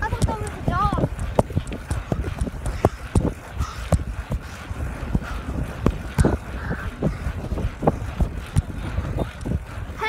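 Irregular knocks and rumbling of a phone being handled or carried while walking, with a short voice sound about a second in.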